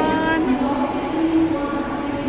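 Electronic sound effects from a small mall kiddie train ride: a steady whistle-like tone for about half a second, then fainter held notes at changing pitches, like a simple jingle.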